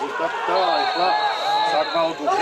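Match commentator talking, with one long, steady, high referee's whistle blast starting about half a second in.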